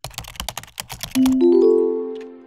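Audio logo: rapid computer-keyboard typing clicks for about a second, then a short rising run of four bell-like notes that enter one after another and ring out, fading away.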